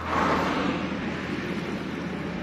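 Steady outdoor background noise: an even hiss over a low hum, with no distinct events.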